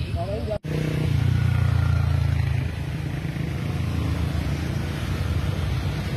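Motorcycle engines running low and steady with passing road traffic, strongest in the first couple of seconds after a brief break, under the voices of people by the road.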